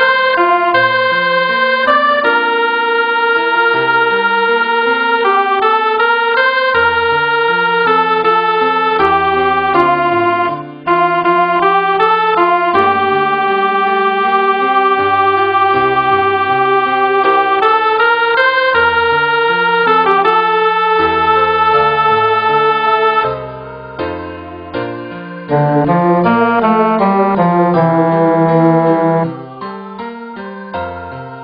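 Computer playback of a choral score: the vocal line sounds as sustained, organ-like synthesized notes over a piano accompaniment, with short breaks between phrases about 11 and 24 seconds in.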